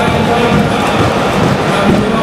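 Large stadium crowd of football supporters chanting and singing together, a loud, steady mass of voices.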